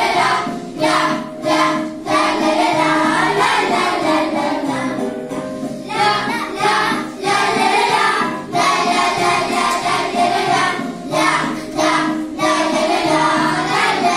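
A group of children singing a song together, phrase by phrase with brief breaks between lines.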